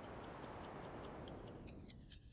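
Faint, steady ticking, about five ticks a second, over a soft hiss.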